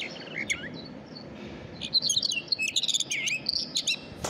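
Bluebird song: a few short, high chirps, then a quick run of warbled chirping notes from about two seconds in.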